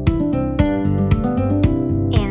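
Instrumental children's-song music with a steady beat of about two strokes a second under sustained pitched notes.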